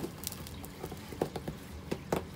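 Leather catcher's mitt being pulled apart, the palm liner peeling off the shell where factory palm adhesive holds the two together: a string of faint, irregular crackles and ticks as the adhesive lets go.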